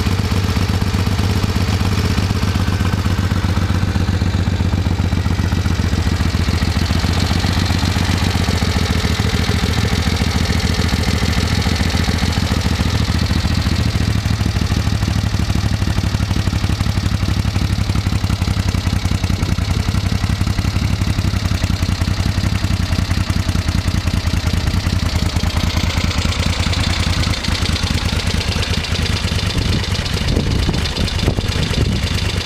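1971 Moto Guzzi V7 Special's air-cooled transverse V-twin idling steadily.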